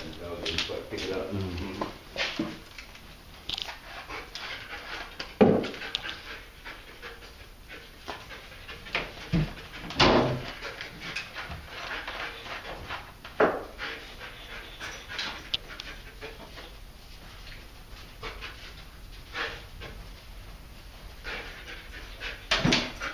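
Detection dog panting and sniffing as it works a room on a search, with a few sharp knocks, the loudest about five and ten seconds in.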